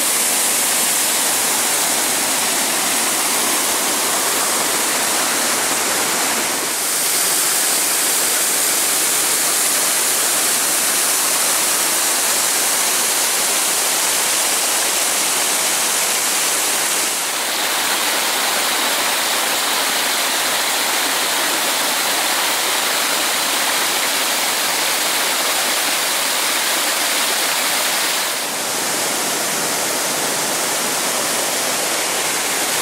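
Small waterfalls pouring over rock ledges: a loud, steady rush of falling water. Its tone shifts slightly about a quarter and about halfway through and again near the end, from one fall to another.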